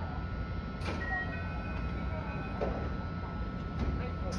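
JR West 221 series electric train standing at the platform with a steady low hum from its equipment, and a few brief knocks as its doors close.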